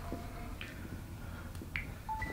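A cell phone being handled and passed from hand to hand: two faint short clicks, one about half a second in and one near the end, over a low room hum.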